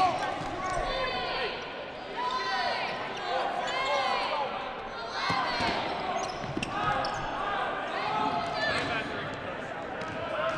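Sounds from a dodgeball game on a hardwood gym floor: repeated short high squeaks of sneakers, balls bouncing, and players calling out.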